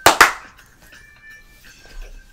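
Two loud, sharp hand claps in quick succession.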